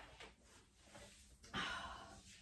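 A woman's breathing after a hard exercise set: faint, with one short breathy exhale about one and a half seconds in.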